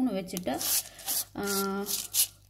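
A woman speaking, with one drawn-out word about a second and a half in.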